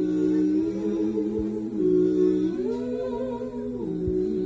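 Several voices humming wordless close harmony, a cappella, holding sustained chords that move to new pitches a few times.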